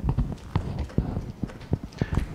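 Several soft, low thumps and knocks at irregular intervals, with no speech between them.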